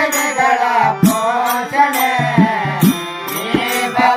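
Kannada devotional bhajan: voices singing over a harmonium's held reed tones, with tabla strokes and small hand cymbals keeping the beat.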